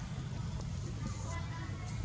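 Steady low rumble of outdoor background noise, with faint scattered higher sounds and a brief hiss about a second in.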